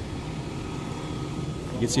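Steady low rumble of fire-truck engines running in the distance, with no sudden sounds; a man's voice starts near the end.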